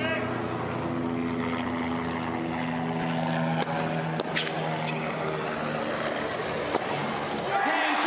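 Tennis ball struck by rackets in a rally, sharp pops about three, three and a half and four and a half seconds in. Under them is a steady droning hum of several held tones, which fades out about six seconds in.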